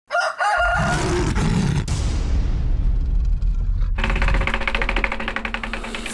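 Produced intro sound effects. A short wavering pitched call opens over a deep rumble, then a long whoosh fades out. About four seconds in, rapid, evenly spaced clicking begins over held tones.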